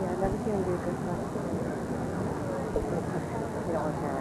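A person speaks briefly at the start, then steady outdoor background noise with faint voices from spectators.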